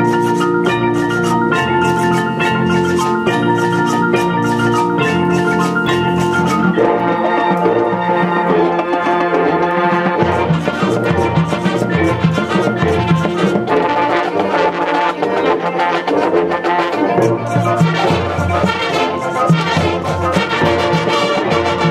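Marching band playing its field show: front-ensemble marimbas and other mallet percussion with brass. The music grows fuller from about seven seconds in.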